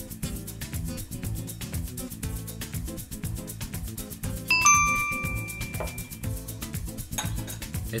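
A metal spoon gives one sharp, ringing clink about four and a half seconds in, its tones dying away over about a second, over steady background music with a beat.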